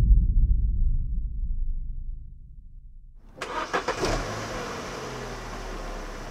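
A low rumble fades away over the first three seconds. Then, about three and a half seconds in, the 2009 Vauxhall Astra's 1.4 engine starts suddenly and settles into a steady idle, heard from behind the car at the exhaust.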